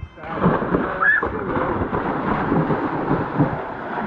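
A person jumping into a swimming pool: a splash about a quarter second in, then a steady, loud rush of churning water.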